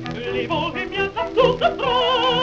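A contralto sings in French with orchestra, played from a 1926 Brunswick 78 rpm record. She runs through quick ornamented notes that bend up and down, then near the end settles on a held note with wide vibrato.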